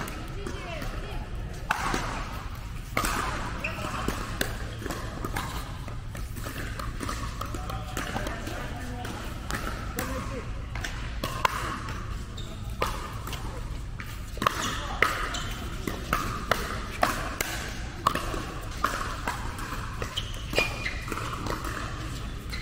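Pickleball paddles hitting a plastic pickleball, with the ball bouncing on the court: a few sharp pops early on, then a quick string of pops through the second half as a rally is played. Voices chatter over a steady low hum.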